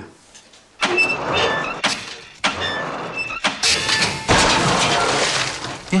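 Ceiling-mounted jug dispenser dropping water jugs: after a moment of quiet, a series of loud crashes and clattering, three separate hits, the last running on as a long crashing din.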